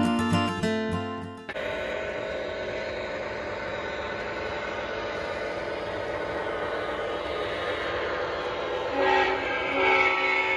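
Guitar intro music cuts off about a second and a half in, giving way to the steady running noise of Lionel O gauge model trains circling the layout: motors and wheels rolling over three-rail track. Music comes back in near the end.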